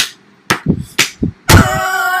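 A few sharp slaps or knocks about half a second apart, then, about one and a half seconds in, a person's loud, long held yell.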